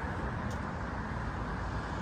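Steady city road-traffic noise, with a brief faint click about half a second in.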